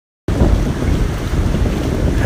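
Wind buffeting a phone's microphone, a loud low rumble, with the hiss of breaking surf behind it. It starts abruptly about a quarter of a second in.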